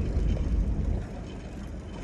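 Vehicle engine and tyre rumble heard from inside the cab while driving slowly over a rough paddock and towing harrows. It eases off about halfway through.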